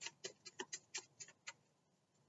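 A deck of cards being shuffled by hand: a faint, quick run of light clicks, about eight a second, that stops about one and a half seconds in.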